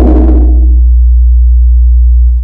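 Loud, deep, steady bass drone from a cinematic intro sound effect. A rushing, noisy upper layer swells over it and fades away about a second in.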